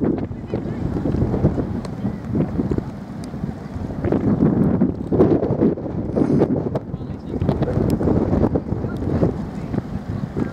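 Wind buffeting the microphone: an uneven low rumble that rises and falls throughout, with indistinct voices under it.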